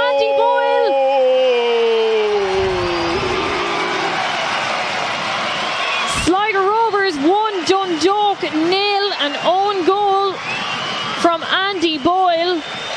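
A commentator's long drawn-out goal shout, falling in pitch, fades into crowd cheering. About halfway through, one voice starts chanting short repeated syllables, about two a second.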